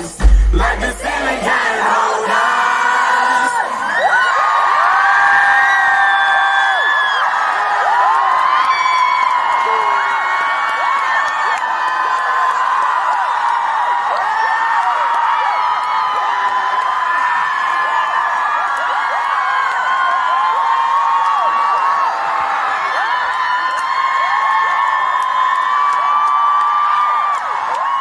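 Live hip-hop music with heavy bass cuts off about two seconds in, and a large concert crowd cheers, screams and whoops in a steady loud wave.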